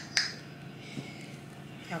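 A sharp click, then a fainter tap about a second later, from hands handling a cloth drawstring dust bag with a handbag inside.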